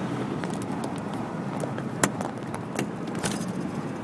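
Steady engine and tyre noise heard inside a car's cabin in slow highway traffic, with a few sharp clicks about two, three and three and a half seconds in.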